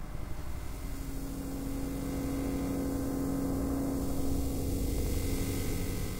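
Electronic drone from synthesizers: a low rumbling bass with a single steady held tone that comes in about a second in, and hiss swelling in the high end toward the close.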